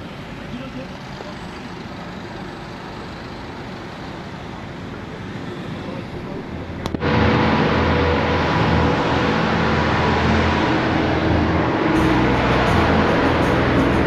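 Steady road and cabin noise inside a moving taxi, cut off abruptly about halfway through by loud background music with a steady low bass line.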